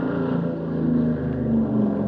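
Radio-drama sound effect of a B-29's piston engines: a steady, loud drone with a slightly wavering pitch as the bomber sets off carrying the X-1.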